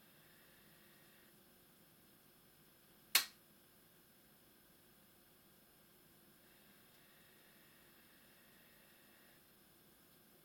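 A single sharp click a little over three seconds in from the laptop's casing as it is handled and pried at; otherwise near-silent room tone.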